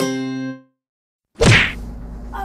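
A short music sting ends on a held chord that fades out within the first half second. After a brief silence, a single sudden loud whack comes about a second and a half in.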